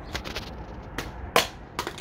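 Galaxy S10 Plus clone smartphone hitting and bouncing across wet concrete paving slabs: a string of about half a dozen sharp knocks and clatters, the loudest about a second and a half in.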